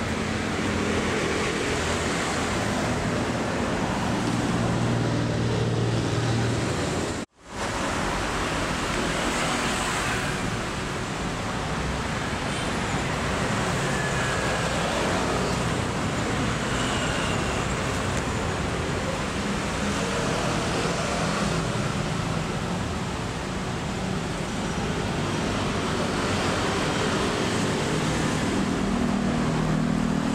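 Steady road traffic noise from a busy street, an even rush with a low hum of engines under it. The sound cuts out abruptly for a moment about seven seconds in, then carries on as before.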